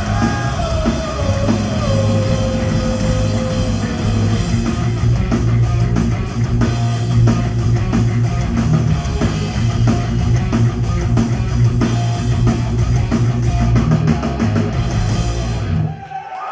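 A rock band playing live and loud: electric guitar, electric bass and a drum kit driving a hard rock song at full volume. The music cuts off right at the end.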